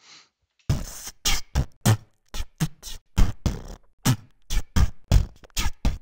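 Playback of a recorded percussion track: a run of sharp, unevenly spaced hits, about three a second, each with a short decay. The track is being checked against detected beat triggers before its hits are cut apart and quantised to the session tempo.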